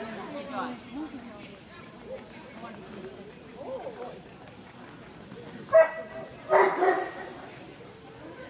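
A dog barking about three times, a single sharp bark near six seconds in followed quickly by two more.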